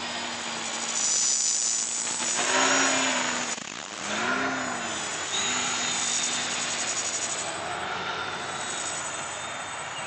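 A 660-size Scarab quadcopter's electric motors and propellers buzzing in flight, the pitch rising and falling as the throttle changes. Louder passes come about one to three seconds in and again around four to five seconds.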